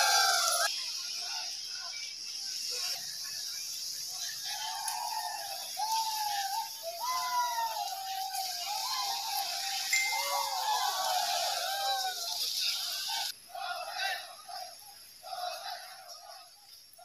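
Raised human voices calling out in drawn-out, rising-and-falling phrases over a steady hiss. The calls thin out and fade over the last few seconds.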